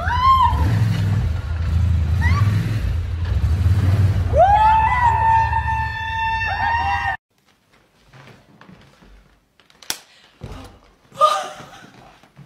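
An ATV engine runs low and steady as the quad drives across a pool cover, with a short shout and then a long, held cheering scream. The sound cuts off abruptly about seven seconds in, leaving faint room sounds and a single click.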